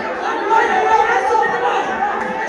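Many women's voices praying aloud at the same time, overlapping into a steady wash of speech with no single voice standing out.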